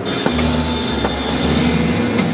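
Carnival water-gun race game in play: a steady hiss from the water pistols' jets, starting suddenly, with steady tones and a low hum from the game machine running under it.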